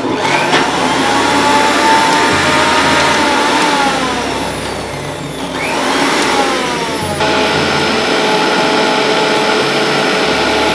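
Preethi mixer grinder motor running loudly, blending a mango mixture in its plastic jar. Its pitch sags about four seconds in and climbs back, then shifts abruptly about seven seconds in.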